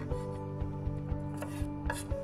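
Chef's knife slicing celery on a wooden cutting board: a series of short knife strokes knocking on the board, over background music.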